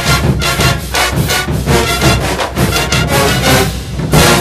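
Marching band music: a brass section playing loudly over a steady beat.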